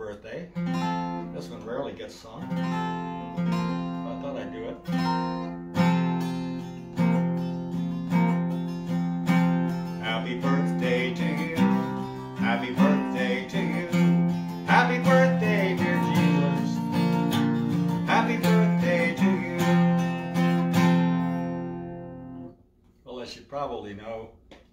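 Acoustic guitar strummed, a new chord struck about once a second, with a man singing along. The playing stops about a second and a half before the end.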